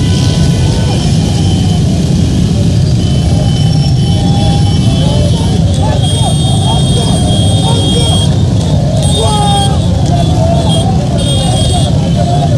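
Many motorcycle engines running together in a packed street procession, a continuous low rumble, with a crowd of voices shouting over it. A high steady tone comes and goes in the second half.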